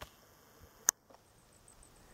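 Quiet outdoor background with faint high-pitched tones and one sharp click a little under a second in.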